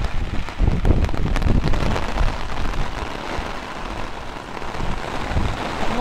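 Heavy rain falling steadily on pavement and parked cars, a dense, even hiss.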